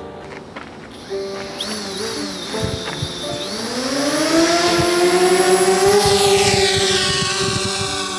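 Small quadcopter drone's motors spinning up for take-off: a rising whine that climbs in pitch and loudness over a few seconds, then holds steady as it lifts off, over a music bed.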